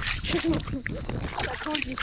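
Hands swishing and splashing in shallow river water as they are rinsed, with quick, irregular splashes and trickles.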